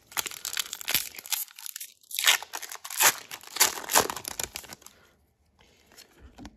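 A Pokémon booster pack's foil wrapper being torn open and crinkled in the hands: a run of sharp crackles and rips over the first four and a half seconds, the loudest in several short bursts, then only faint rustling.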